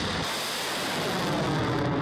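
Rocket motor of a missile fired from a truck-mounted launcher, a loud, steady rushing noise as the missile climbs away.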